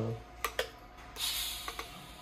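Two sharp clicks, then a steady hiss from a TIG welding torch, starting about a second in, of its shielding gas flowing before the arc is struck.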